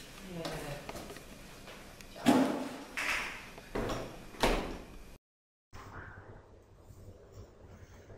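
A door being shut, among several sharp knocks and bumps between about two and five seconds in. The sound drops out for a moment just after that.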